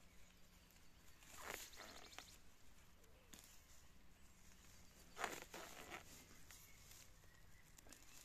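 Near silence broken by two faint brief rustles, about a second and a half in and again past five seconds: a hand parting long dry grass.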